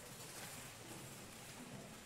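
Faint room tone of a large church: an even, quiet hiss with no music or clear events.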